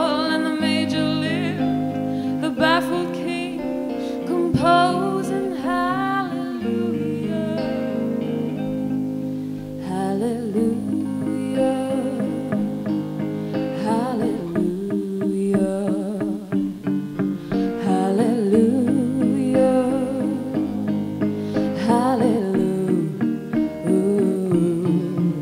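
A live band playing a slow ballad: an electric guitar plays melodic lines with bends and vibrato over sustained chords, with singing.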